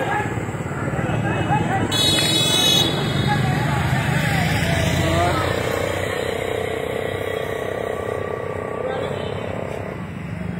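Roadside traffic noise: vehicle and motorcycle engines running under scattered voices, with a brief horn toot about two seconds in.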